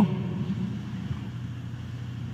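A steady low hum with faint hiss in the pause between a man's phrases in a recorded speech: the background noise of a podium microphone feed.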